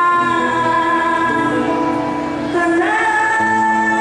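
A woman singing into a microphone over backing music. She holds one long note, then glides up into a new held note about two and a half seconds in.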